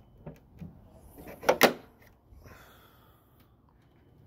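Car hood being opened at the grille latch: a few small clicks, then two sharp clacks close together about a second and a half in as the latch lets go and the hood is lifted.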